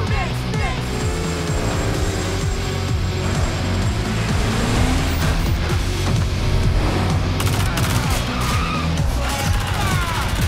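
Film soundtrack: loud, driving music with car engine and tyre-skid sound effects under it, and a run of sharp gunshot cracks near the end.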